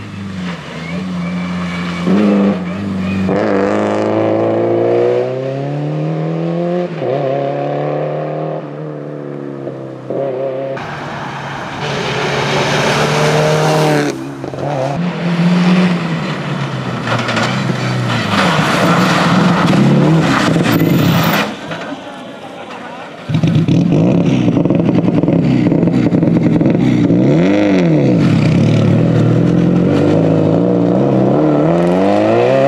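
Subaru Impreza WRX STI rally car's turbocharged flat-four engine at full throttle through the gears, its pitch repeatedly rising and dropping at each gear change, in several short passes cut together. From about two-thirds of the way in it runs loud and steady as the car passes close.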